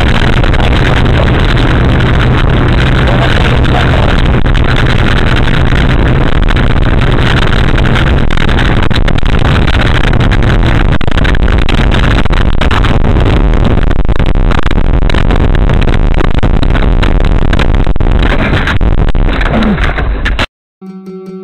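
Dashcam microphone inside a car driving on a dirt road, picking up a loud, overloaded, steady rumble of tyres and engine with a low drone. In the last couple of seconds the noise turns uneven as the car leaves the road and tips over.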